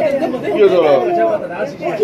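Speech: people chatting at a table.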